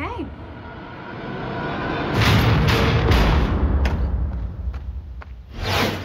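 Film trailer music and sound design: a low, rumbling score that builds to a loud stretch about two seconds in, with a rising whoosh near the end.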